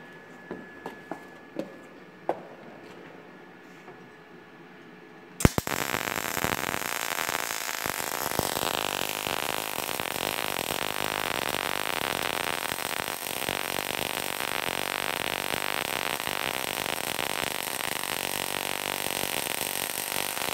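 A few light clicks, then the MIG-MAG welding arc of a MultiPro MIG-MAG 200 G-SP inverter welder strikes about five seconds in with a sharp crack and runs with a steady crackle while a bead is laid.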